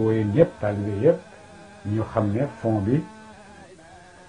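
A man chanting drawn-out syllables on a held, wavering pitch, in two phrases with a short pause between them.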